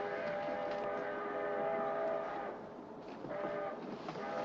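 Train whistle sounding a chord of several tones: one long blast of about two and a half seconds, then a short blast near the end.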